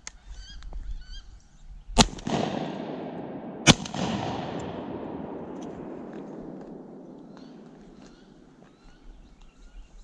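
Two shotgun shots about a second and a half apart, the second dropping a duck, each blast echoing and fading slowly across the swamp over several seconds. A few faint, high rising bird calls come just before the shots.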